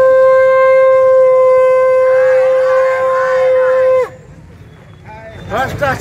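A conch shell blown in one long, loud, steady note that bends down and stops about four seconds in. Faint voices lie under it, and about a second after it stops a crowd starts shouting slogans.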